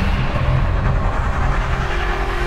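Cinematic logo-intro sound effect: a loud, dense wash of noise over a heavy low rumble, held steady.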